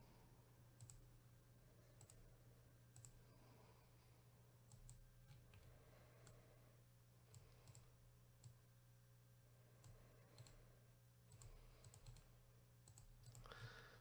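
Near silence: a low steady hum with faint, scattered computer mouse clicks, about a dozen at irregular intervals.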